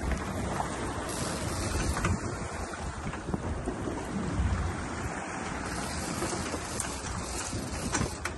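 A boat under way at sea: wind buffeting the microphone over water rushing past the hull and the outboard motors running, a steady noise with no distinct events.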